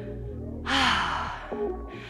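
A woman's loud, breathy exhale close to a headset microphone, lasting under a second, over background workout music with a steady bass line.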